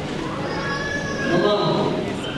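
A person's high, drawn-out, wavering voice, growing louder through the second half, without clear words.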